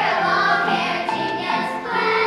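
Children's choir singing in unison with held notes, accompanied on an electronic keyboard.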